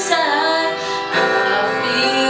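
A young woman singing a song solo. She holds a note, then starts a new phrase a little past a second in.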